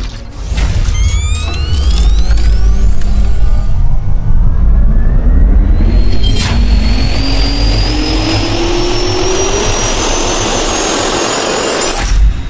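Cinematic intro sound effect of a jet turbine spooling up: a deep rumble under several rising whines, then a sharp hit about six and a half seconds in, followed by a high whine climbing in small steps.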